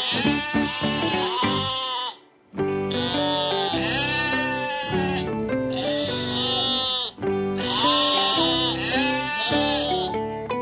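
Sheep bleating, about four long wavering bleats, over background music.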